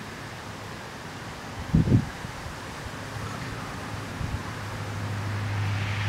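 Wind buffeting the microphone under a gusty storm front, with one brief low thump about two seconds in. A steady low hum grows louder over the second half.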